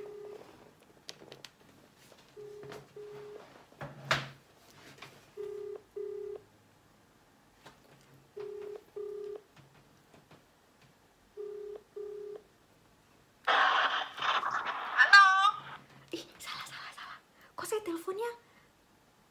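Phone ringback tone over the phone's speaker: a double ring, two short steady beeps close together, repeating about every three seconds, five times while the call waits to be answered. About 13.5 seconds in the call connects with a loud burst of noise and a voice coming through the phone.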